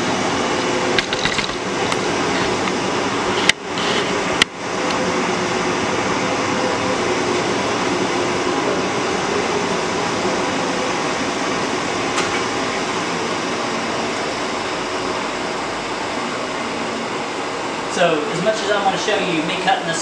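A steady, even ventilation hum with a faint fixed tone in it, running without change. It is broken by a few sharp clicks in the first five seconds, and a man's voice comes in near the end.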